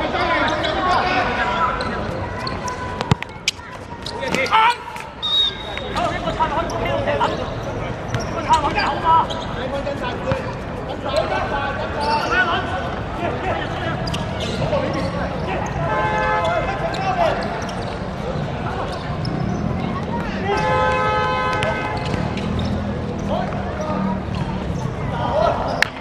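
A football being kicked and struck on an artificial-turf pitch, sharp thuds scattered through, over players' shouts and calls, with a longer call near the end.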